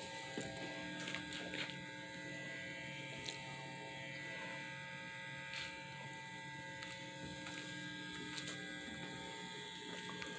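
Faint steady electrical hum made of several constant tones, with a few faint clicks.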